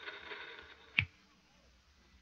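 Gunshot sound effects in an old radio-drama recording: the ringing tail of two shots dies away, then a single short, sharp crack comes about a second in.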